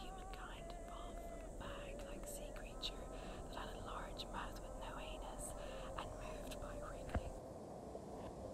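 Faint whispered voice with no clear words, over a low steady wavering tone, with a single sharp click about seven seconds in.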